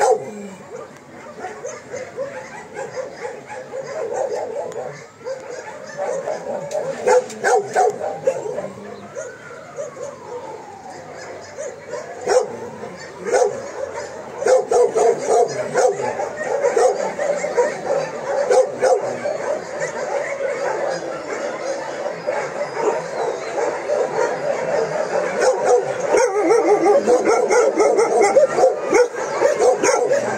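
Many kennelled dogs barking and yipping at once in a continuous overlapping chorus, getting busier in the second half.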